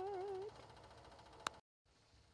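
A cat meowing: one long, wavering meow that ends about half a second in. A single sharp click follows about a second and a half in.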